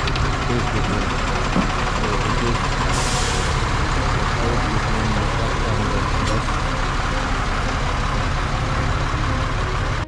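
Heavy diesel engines of a loaded multi-axle lorry and a bus idling steadily at close range, with a short hiss of air about three seconds in.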